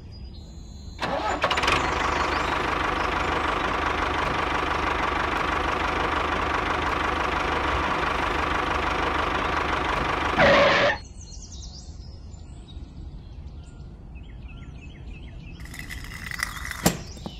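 Small electric gear motor of a miniature model tractor running at a steady whine for about ten seconds. It starts about a second in, swells briefly and then cuts off at around eleven seconds.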